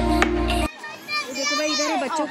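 Background music that cuts off abruptly less than a second in, followed by children playing and calling out in high voices.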